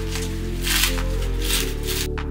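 Background music with steady held low notes, over the crinkle and rustle of clear plastic film being pulled off a stack of white plastic satay-skewer trays.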